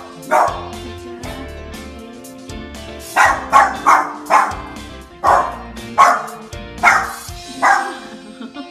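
Maltese dog barking at a cheetah on TV: one bark, then after a pause a quick run of four barks followed by four more about a second apart. Background music plays throughout.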